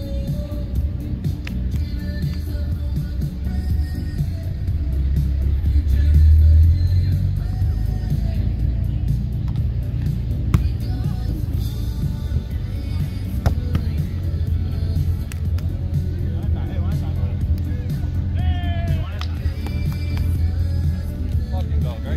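Steady low rumble that swells about five to seven seconds in, under background music and voices, with a few sharp slaps of a volleyball being hit during a rally.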